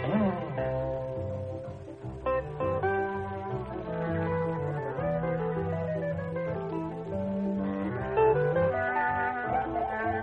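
Small jazz guitar trio playing a swing instrumental, a guitar melody over a moving bass line, with a short sliding note near the start. It has the narrow, thin sound of a 1940s radio broadcast recording.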